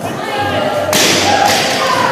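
A loaded barbell with black bumper plates dropped from overhead onto the gym floor: a loud thud about a second in, with a second impact about half a second later as it bounces.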